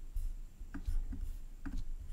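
A few faint, short taps and rubs of a computer mouse being slid across a desk toward an on-screen button.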